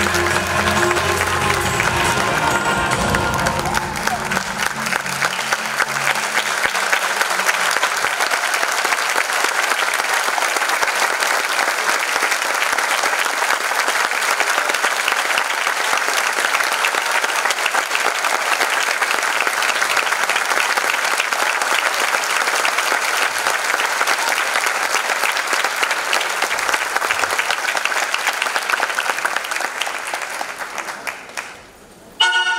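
Stage music ends a few seconds in and gives way to long, steady audience applause, which starts to fade at the very end.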